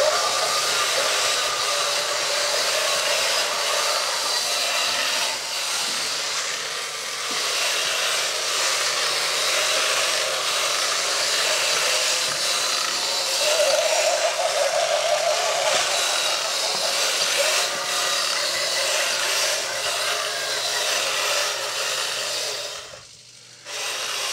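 Several motorised walking robot toys running at once: small geared motors whirring and their walking legs working on a wooden floor, a steady mechanical buzz. It drops away briefly near the end.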